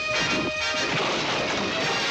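A crash and clatter of furniture going over in a staged fist fight, lasting about a second, over the scene's background music of held, brassy notes.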